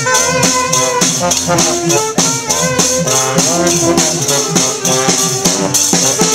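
Street folk band playing a lively tune on trombone and saxophone over a snare drum and cymbal that keep a steady, quick beat.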